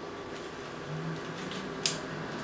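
Camera gear being handled: one sharp click near the end, with a fainter tick just before it, over low room noise.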